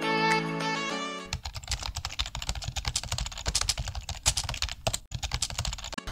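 A short stretch of music ends about a second in. It is followed by rapid, irregular clicking and tapping that keeps going until the end.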